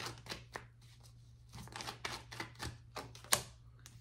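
Tarot cards being shuffled and handled: a run of quick, dry card clicks in two bursts, the sharpest just before the end, over a steady low hum.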